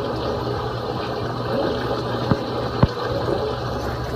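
Reef aquarium's water circulating: a steady rush of moving water with a low pump hum underneath, and two small sharp clicks a little past the middle.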